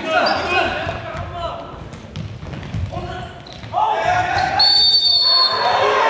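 Futsal played in an echoing sports hall: players' shouts and calls, the ball knocking on the wooden floor, and one short referee's whistle blast of just under a second, sounding after about four and a half seconds.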